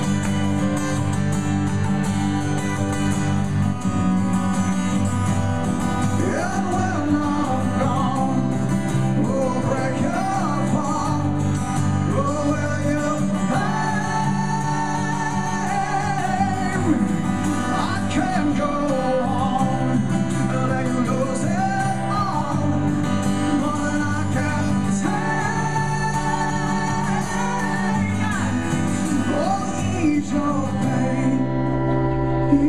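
Live acoustic guitar strumming chords, with a singing voice joining about six seconds in and holding long notes over the guitar.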